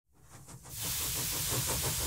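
A steady hiss that fades in from silence over the first second, then holds.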